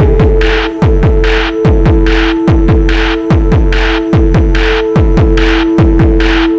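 Instrumental electronic music: a kick drum whose pitch falls on each hit beats about two and a half times a second under a steady held synth drone, with bursts of hiss between the beats.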